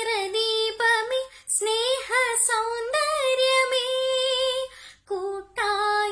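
A young girl singing solo and unaccompanied, holding long notes with vibrato, with short breaks for breath about one and a half and five seconds in.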